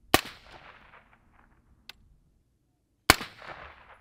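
Two suppressed rifle shots from a 10.5-inch LMT AR-15 firing 5.56 ammunition, about three seconds apart, each a sharp crack followed by about a second of echo. A faint click falls between them.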